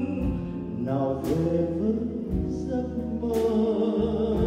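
A male vocalist singing a Vietnamese song, accompanied by a string chamber ensemble with keyboard and drums.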